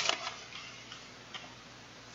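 Paper pages of a thick book being leafed through: a short rustle at the start, then a few faint clicks.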